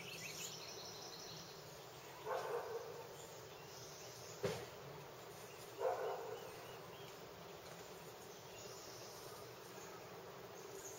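Faint outdoor ambience with a low buzz of insects, broken by two short louder sounds about two and six seconds in and a sharp click in between.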